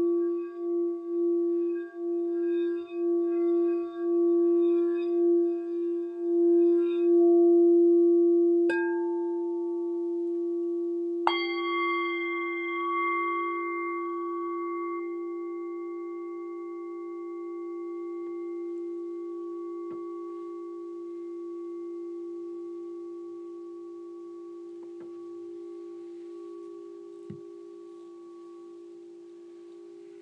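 Singing bowls: a crystal singing bowl rimmed with a mallet gives a steady, pulsing low tone that swells over the first several seconds and then rings on. About nine and eleven seconds in, a handheld metal singing bowl is struck twice, adding bright overtones, and all the tones fade slowly together.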